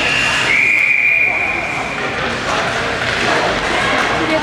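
A referee's whistle blown in one steady, shrill blast of about two seconds, dipping slightly in pitch half a second in, over the chatter of spectators in the rink.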